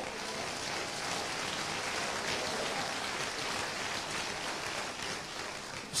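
Congregation applauding: a steady patter of many hands clapping that builds over the first second and then holds.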